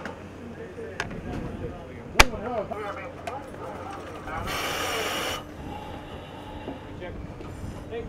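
Metal-on-metal latching of a surface-supplied diving helmet onto the diver's neck ring, with a light click and then one sharp loud clack a couple of seconds in. About halfway through, a second-long hiss of air comes from the helmet's air supply.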